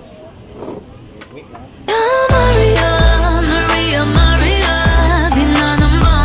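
Faint voices and room noise for about two seconds, then loud pop music with a heavy, steady beat cuts in suddenly: outro music for the end card.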